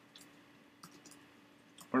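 A handful of faint, irregularly spaced computer keyboard keystrokes as a short terminal command is typed and entered.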